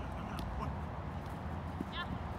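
Open-air ambience of a soccer pitch: a low steady rumble with faint distant voices, and a short high call near the end.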